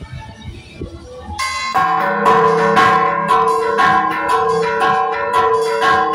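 Large bronze church bells rung in a rapid festive peal (repique), their clappers pulled by hand on ropes. After a quieter first second and a half, loud strikes come two or three a second, with several bell tones ringing on between them.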